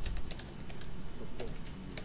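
Typing on a computer keyboard: a quick run of keystrokes in the first half second, then a few scattered ones.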